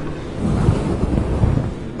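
Low rumbling noise on the microphone, like wind buffeting or the mic being handled, swelling twice, about half a second and a second and a half in.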